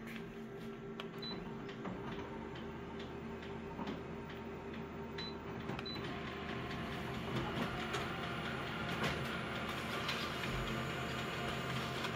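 Office multifunction laser copier running with a steady hum. About halfway, after its Start key is pressed, the print mechanism starts up and the sound grows louder and busier as a copy feeds out into the output tray.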